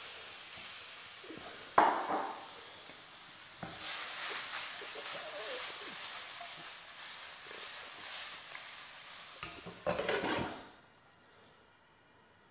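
Prawns and vegetables sizzling in a very hot wok, with a sharp knock as the prawns go in and louder sizzling while the wok is tossed over the flame. Clattering knocks near the end as the lid goes on, after which the sizzle drops away to a faint hiss.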